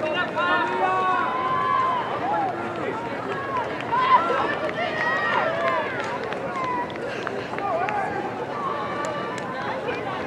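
Spectators shouting and cheering encouragement at runners nearing a cross country finish line: several raised voices calling out at once, overlapping throughout.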